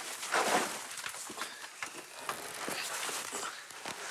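Handling noise as a heavy old wooden table is lifted and shifted out of storage: a steady rustling noise with a few faint knocks.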